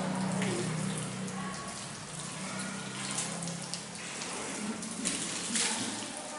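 Water running from a wall tap and splashing as a man washes his hands and arms for ablution (wudu), with a low steady hum under it that fades out about four seconds in.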